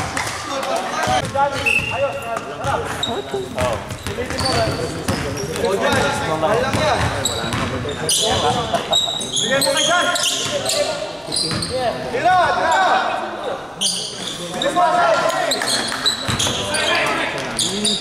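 A basketball bouncing on a hardwood gym floor during play, with players' voices calling out over it throughout.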